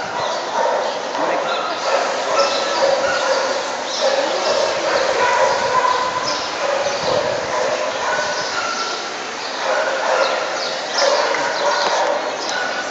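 Dogs barking over a steady background of people talking.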